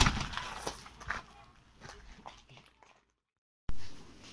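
A glazed door banging shut, followed by a few lighter knocks and taps within the first second or so. The sound drops to dead silence near the end, then comes back abruptly loud.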